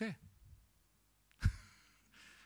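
A man's short, breathy exhale or sigh into a close microphone about one and a half seconds in, hitting the mic with a low pop and trailing off as a soft hiss, after a spoken "okay".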